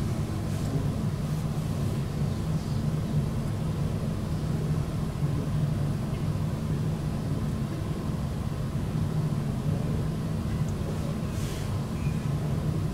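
Steady low-pitched room hum with no speech, with a faint click near the end.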